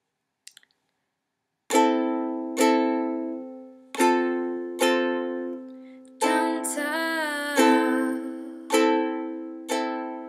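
Ukulele playing slow single strummed chords, each left to ring and fade, starting about two seconds in. A voice sings a short wavering note over the chords near the middle.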